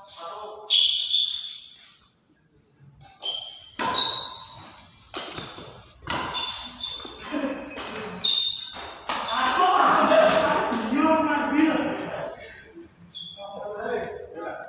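Badminton doubles rally on a tiled court: sharp racket strikes on the shuttlecock and shoes squeaking on the floor, echoing in a large hall. Players' voices call out for a few seconds past the middle.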